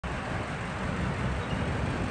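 Steady roadside traffic noise, with vehicle engines running and a low rumble.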